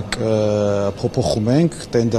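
A man speaking, with one long held vowel in the first second.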